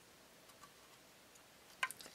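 Near silence with a few faint, light clicks, then a sharper double click just before the end.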